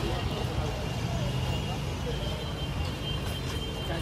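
Street ambience: a steady low rumble of traffic with faint voices in the background.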